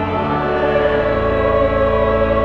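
Church choir singing held chords with instrumental accompaniment, sustained low notes underneath.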